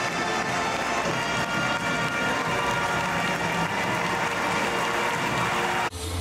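Music with brass-like tones playing over the steady noise of a large basketball arena crowd. It cuts off suddenly just before the end.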